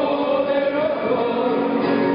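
Men's voices singing together to two acoustic guitars, heard live in a large room.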